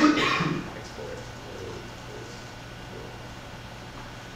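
A man briefly clears his throat in the first half second, then quiet room tone with a steady low hum.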